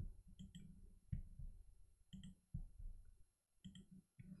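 Faint, scattered clicks of a computer mouse and keyboard keys, about half a dozen separate presses.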